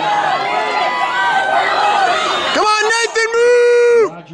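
Excited speech while the race is run, then one long held shout from about two and a half seconds in, the loudest sound here, cutting off suddenly at the end.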